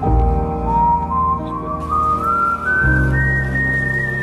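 Background music in an instrumental passage between sung verses: a high, held lead melody climbs slowly in small steps over sustained low chords, and the bass chord changes about three seconds in.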